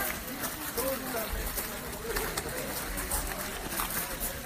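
Indistinct voices of people talking, with a patter of footsteps and wind rumbling on the microphone that swells about a second in and again near the end.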